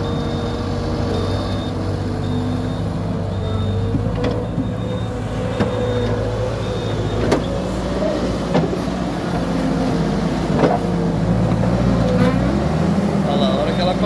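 Volvo MC-series skid steer loader's diesel engine running as the machine drives, its pitch climbing near the end as it starts to push into a dirt pile. A high-pitched beep repeats steadily through the first half, with a few sharp knocks from the machine along the way.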